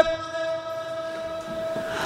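A steady pitched hum with several overtones, slowly fading away.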